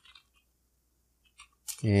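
Computer keyboard keystrokes: a few faint clicks at the start and a couple more about a second and a half in, with a man's voice starting near the end.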